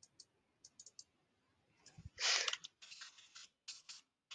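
Faint computer keyboard and mouse clicks: a few light clicks in the first second, then a louder run of keystrokes from about two seconds in as text is deleted with the backspace key.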